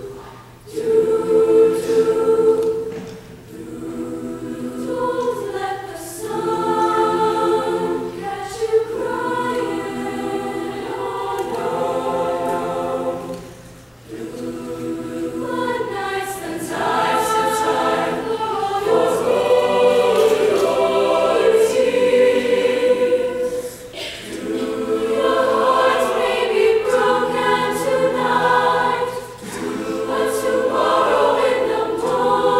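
Mixed-voice middle school show choir singing in harmony, in phrases broken by brief pauses.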